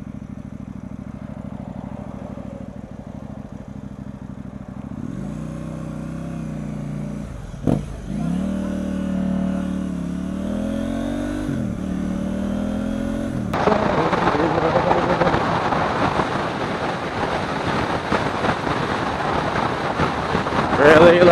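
A motorcycle engine idles steadily, then pulls away, rising in pitch through two gears with a short dip at each shift. From about thirteen seconds in, a loud steady rush of wind and road noise on the helmet microphone takes over.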